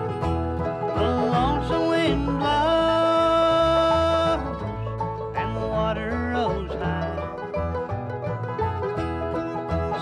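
Bluegrass band playing a slow song on banjo, mandolin, acoustic guitar and upright bass, with a singer holding one long note about two and a half seconds in.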